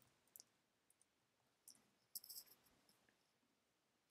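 Faint computer keyboard keystrokes: a couple of single taps, then a quick run of four or five about halfway through as a colour value is typed.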